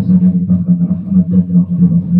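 A man chanting prayers into a microphone, his voice held on a nearly steady low pitch that pulses slightly from syllable to syllable.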